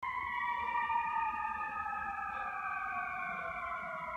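Ambulance siren: long, steady tones that fall slowly in pitch over several seconds.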